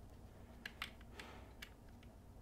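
A handful of faint, short clicks from hands handling the disconnected negative battery cable and its terminal screw; otherwise near silence.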